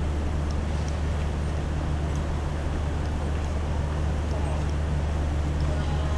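Steady low city hum, with a constant low drone and faint voices in the distance.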